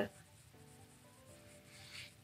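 Faint rubbing and rustling of a glossy paper lookbook being handled and its pages turned, a little louder near the end, under faint steady background music.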